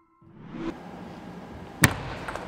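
The ambience of a table tennis hall comes up. Near the end a single sharp click sounds: the table tennis ball being struck in play.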